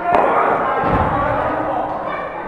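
Indistinct voices echoing in a large indoor sports hall, with one sharp knock just after the start and a dull low thud about a second in.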